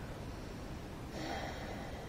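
A man's audible breath, a snort-like exhale starting just over a second in and lasting under a second, over a low steady room hum.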